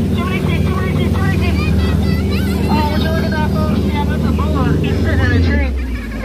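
Tour boat motor running with a steady low hum that drops lower about five and a half seconds in, over the rush of churning river water, with voices.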